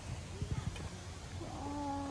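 A cat meowing: one long, level-pitched meow starting about one and a half seconds in, after a few soft knocks.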